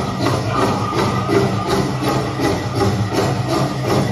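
Powwow drum group playing a grand entry song: a steady drumbeat with voices singing over it.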